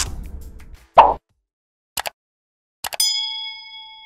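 Sound effects of an animated subscribe panel, heard as the end of the background music fades out. A single pop comes about a second in, then two short sets of clicks, then a bell-like notification ding about three seconds in that rings on with a few clear tones.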